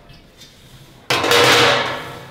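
A metal baking pan clattering and scraping as it is moved onto a metal rack: one sudden noisy clatter about a second in that fades out over under a second.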